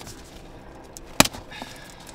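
Handling noise: one sharp click about a second in, then a fainter one, as something is handled in the hands.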